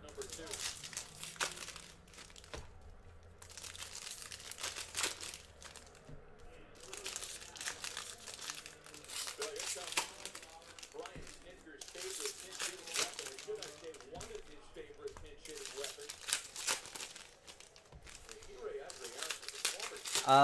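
Shiny foil trading-card pack wrappers being torn open and crinkled by hand, an irregular run of crackling and tearing that goes on pack after pack.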